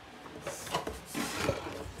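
Light handling noise as an RC car is turned around on a table: a faint scraping with a few soft knocks, the clearest about a second and a half in.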